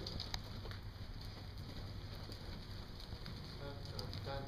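A horse's hooves landing and moving on soft indoor-arena footing: a few faint, irregular knocks over a steady low background hiss.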